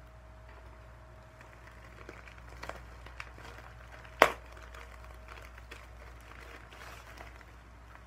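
A mail package being handled and opened by hand: faint rustling and crinkling with scattered small clicks, and one sharp snap about four seconds in, over a low steady hum.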